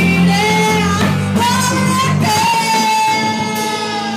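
Live rock band with a female lead singer, electric guitars, bass and drum kit playing. The singer holds one long note while the drums and the deepest bass drop out about two and a half seconds in.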